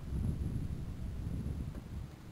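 Wind buffeting the microphone outdoors: an uneven low rumble with no clear tone or rhythm.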